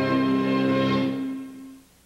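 Closing held chord of a TV miniseries' theme music, fading out about a second and a half in and leaving near silence.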